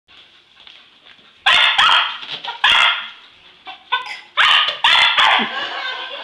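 English Cocker Spaniel barking excitedly at balloons: a string of sharp barks starting about a second and a half in. Five are loud, with a couple of softer ones in between.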